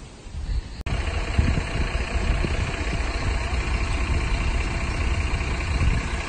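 A bus's diesel engine idling close by: a steady low rumble that comes in suddenly about a second in and holds level.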